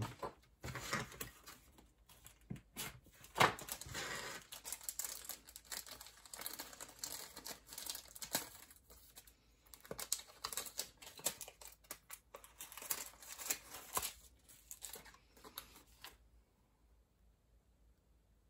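Clear plastic packet rustling and crackling in irregular bursts as it is handled and opened by hand and a model-kit decal sheet is drawn out; the rustling stops near the end.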